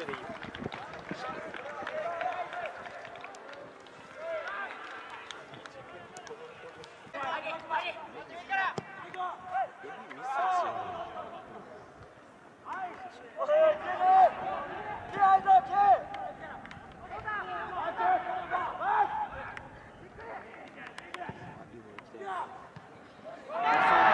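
Players and onlookers shouting and calling out across an outdoor football pitch, loudest around the middle. The voices swell into louder shouting right at the end as a goal goes in.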